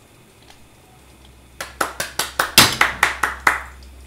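Hands clapping: about a dozen quick, even claps over two seconds, starting about a second and a half in.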